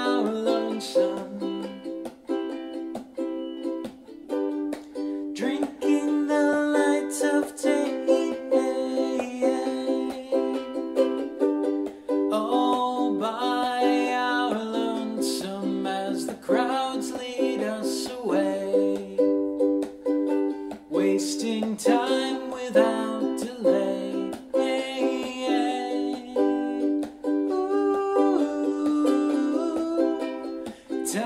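Ukulele strummed in an instrumental passage of a song.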